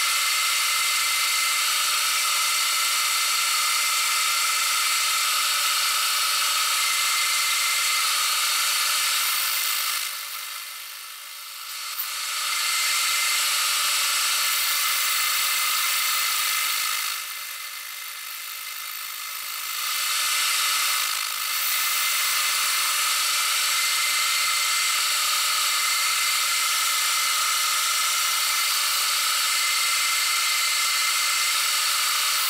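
Deckel FP1 milling machine running, its end mill side-milling a flat on a small turned shaft: a steady high machine whine. The sound drops away twice for a couple of seconds, about ten seconds in and again around eighteen seconds.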